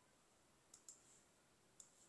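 Near silence: room tone with a few faint clicks, two close together under a second in and one near the end.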